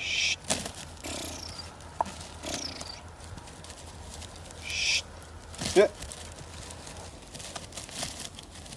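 A man hushing a pointing dog with two short "shh" hisses, one at the start and one about five seconds in, followed by a short, loud voiced call; faint high falling chirps, like birdsong, come in between.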